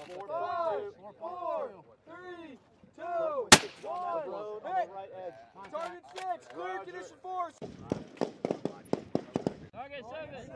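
A single suppressed sniper-rifle shot cracks out about three and a half seconds in, the loudest sound here. Voices talk around it, and near the end comes a rapid string of sharp cracks.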